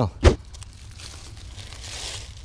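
One sharp knock about a quarter second in, then soft rustling and scraping of soil and dry leaf litter being dug through and shifted by hand.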